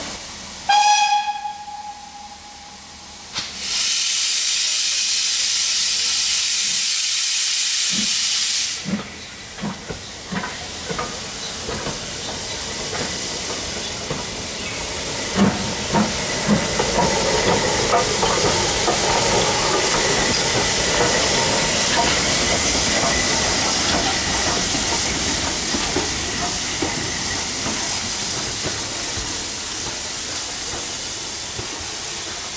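BR Standard Class 4MT 2-6-4 tank locomotive No.80078 getting under way: a short whistle about a second in, a loud hiss of steam for about five seconds, then slow exhaust beats as it starts to move, loudest as it passes close by, with steam hissing and running gear rumbling.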